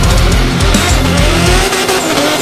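Loud heavy metal music, with a drift car's engine revving beneath it as the car slides sideways; the engine note rises and then bends over.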